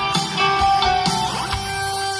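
Live rock band playing an instrumental passage, electric guitar to the fore over keyboards, with a short rising slide in pitch about halfway through.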